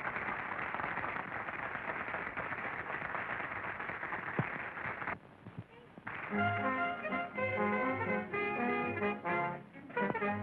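A steady, dense rush of noise fills the first five seconds and drops away briefly. Then, about six seconds in, a theatre band with brass starts up, playing sustained notes over a steady bass on the beat.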